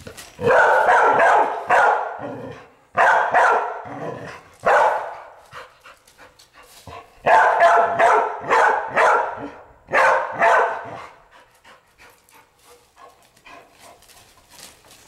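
Young red-nose pit bull barking at an iguana in loud volleys of quick barks, about five bursts with short pauses between them. The barking dies down about eleven seconds in.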